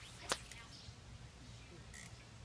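A fly line cracking sharply once, like a whip, during a cast, about a third of a second in.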